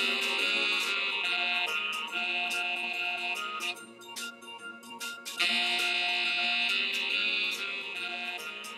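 A four-bar music loop cut from a song playing back in Ableton Live, warped and time-stretched to run faster at 143 BPM: sustained high tones with sharp clicks, thinning out in the middle, until the loop starts over about five and a half seconds in.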